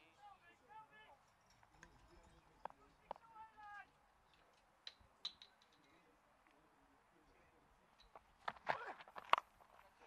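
Quiet open cricket-ground ambience with faint, distant players' voices calling on the field and a few scattered clicks. Near the end comes a cluster of sharper, louder knocks as the ball is bowled and struck by the bat.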